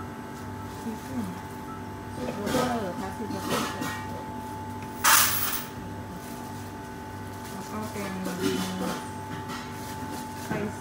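Indistinct voices talking behind a steady electrical hum, with a short, loud rush of noise about five seconds in.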